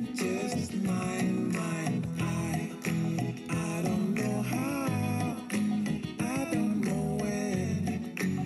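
A song with a singing voice playing from a CD on a Bose Wave Music System IV, its volume turned up high.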